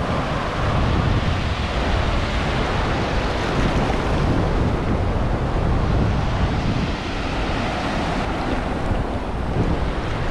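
Ocean surf washing up the beach in shallow foam, with wind buffeting the microphone and a steady low rumble.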